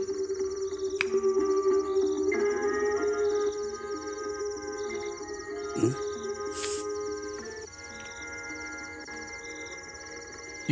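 Film background score of long held notes that grow quieter from about eight seconds in, over a steady chirping of crickets.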